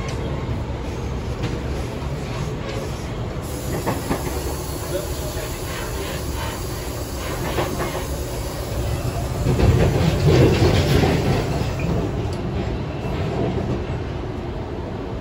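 Inside a moving Sydney Trains electric suburban train: a steady rumble of wheels on rail with short clicks over the rail joints. It grows louder about ten seconds in, then eases.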